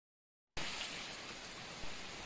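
Steady rain, starting abruptly about half a second in.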